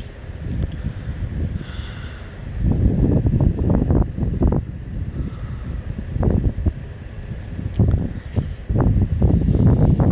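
Wind buffeting a phone's microphone: irregular gusts of low rumbling that come and go, strongest from about three seconds in.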